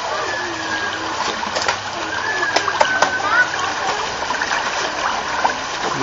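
Shallow stream water running and splashing steadily, with faint voices in the background.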